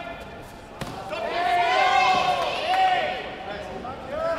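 A sharp knock about a second in, then several voices shouting over one another for about two seconds.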